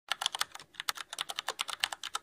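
Keyboard typing: a rapid, irregular run of key clicks, with a brief pause about half a second in.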